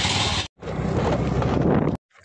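Wind rushing over the microphone on a moving motor scooter, with the scooter running underneath. The noise breaks off abruptly for a moment about half a second in, then carries on.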